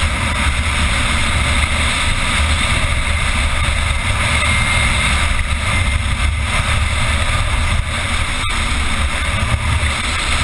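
Steady wind rush buffeting the microphone and low rumble of the wheels on hard cracked lakebed, heard from onboard a solid-wing land yacht under sail. A single sharp click about eight and a half seconds in.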